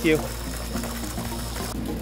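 Water jetting from an inlet pipe into a tank of water, making a steady splashing rush.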